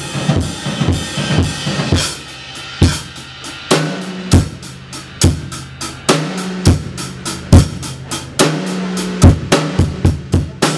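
Live band playing: a drum kit beat of kick and snare hits, with a few loud accented strikes, over electric guitar.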